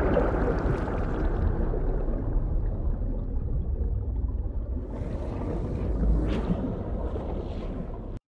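Film soundtrack: a deep, rumbling noise that slowly fades, with faint hiss above it and a brief swell about six seconds in.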